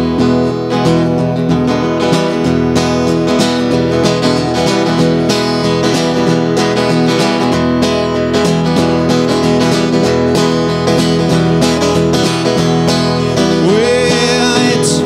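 Solo acoustic guitar strummed in a steady rhythm, the instrumental intro of a song before the vocal comes in.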